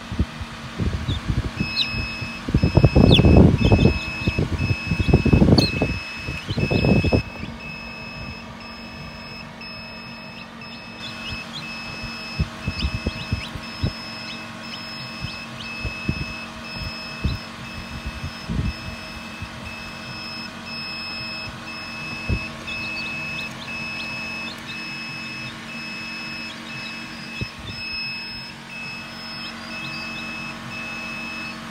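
An electronic alarm beeps steadily from about a second in, a high beep repeating rapidly on and off, over a steady low hum. A few loud, low bursts of noise come between about 2 and 7 seconds in.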